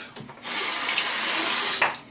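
Bathroom sink tap turned on, water running hard into the basin for about a second and a half, then shut off abruptly.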